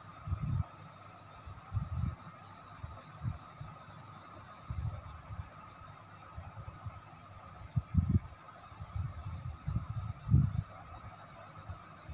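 Green chillies, ginger paste and fennel seeds frying in oil in a steel kadhai: a soft, steady sizzle, with a few dull bumps as a steel spoon stirs them round the pan.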